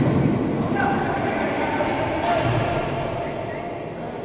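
Indistinct voices talking in an indoor badminton hall, with one short sharp sound about two seconds in.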